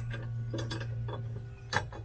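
Light metallic clicks and taps from a suspended accelerator pedal's pin and linkage being worked into its bracket by hand, four or five scattered clicks over a steady low hum.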